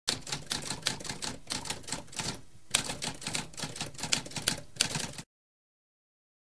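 Typewriter keys clacking in a rapid run of keystrokes, with a short pause about halfway, stopping abruptly about five seconds in.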